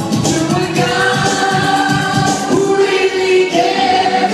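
Loud live performance of a freestyle dance-pop song: a male singer's vocal on a microphone over a backing track with a steady dance beat and held synth notes, played through a club sound system.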